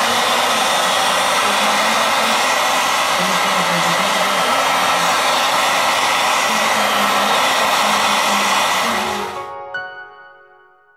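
Hot-air blower (heat gun) running steadily, of the kind used to warm a phone's glued back glass so it can be pried off. It dies away about nine seconds in.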